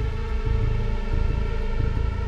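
Background music: a sustained, droning chord held over a low, pulsing bass.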